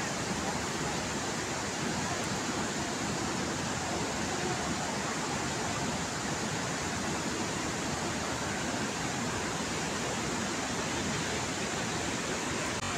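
Steady rushing outdoor noise, even and unbroken, with no distinct knocks or voices standing out.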